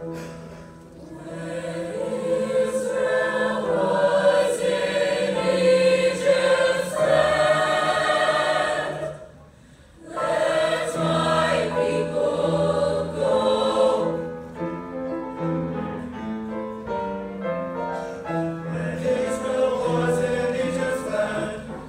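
A mixed high school choir of female and male voices singing a spiritual in full harmony. The sound breaks off briefly a little before halfway through, then the choir comes back in.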